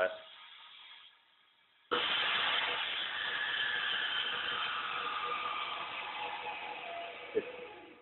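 Henkelman Toucan chamber vacuum packing machine at work: after a short pause, a loud steady hiss starts suddenly about two seconds in and slowly fades over about six seconds. A brief click comes near the end.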